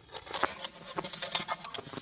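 A thin plastic water bottle being handled and squeezed, crackling in a quick, irregular run of clicks and crinkles.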